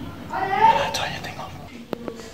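A single drawn-out vocal call about a second long, wavering in pitch, followed by a sharp click near the end.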